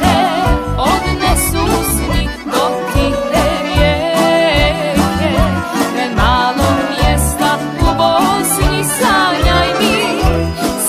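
A sevdah song played by a band: a female singer's ornamented melody over keyboard, tamburica strings, bass and drums, with a steady beat.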